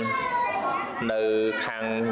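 Speech only: a man's voice preaching in Khmer, a Buddhist monk giving a dharma talk.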